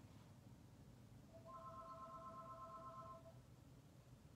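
A telephone ringing faintly for an incoming call: one electronic ring of a few steady tones with a fast trill, lasting about two seconds and starting about a second in.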